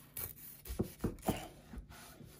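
Chef's knife cutting down through the crisp pastry crust of a baked pie, with a few short crackles and scrapes as the crust gives way.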